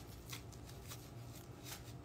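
Faint rustling and brushing, a few short strokes, over a steady low hum: handling noise on a handheld phone's microphone.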